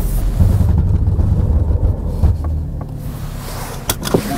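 Cabin sound of a 2015 Porsche Cayman S creeping with the wheel turned: a low, uneven judder with a few faint knocks as the front tires skip, then a sharp click near the end. The owner puts the skipping down to cold summer tires on a light-fronted mid-engine car, the inside front tire having almost no contact patch.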